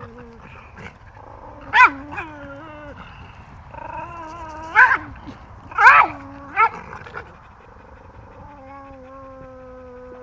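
Dogs in rough play: about four short, sharp yips, the loudest sounds, with long, high whining between them and a steady drawn-out whine near the end.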